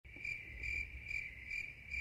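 A single cricket chirping faintly in an even rhythm, a little over two chirps a second.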